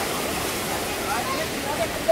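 Steady rush of water cascading down Dunn's River Falls, with faint voices of people underneath.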